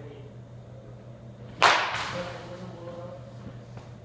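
A baseball bat hitting a pitched ball once, a single sharp crack about a second and a half in that rings off briefly, with a fainter click just after. A low steady hum runs underneath.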